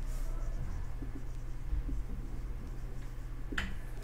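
Marker pen writing on a whiteboard: faint scratching strokes over a steady low hum.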